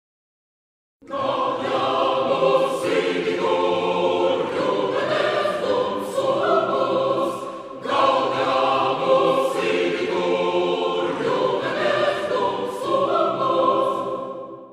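Choral theme music, a choir singing sustained chords. It starts suddenly about a second in, begins its phrase again about halfway through, and fades out near the end.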